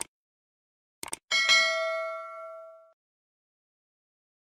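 Subscribe-button animation sound effect: a mouse click, then a few quick clicks about a second in, followed by a notification-bell ding that rings out for about a second and a half.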